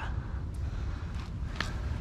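Steady low rumble of wind buffeting the microphone, with two faint clicks about half a second and a second and a half in.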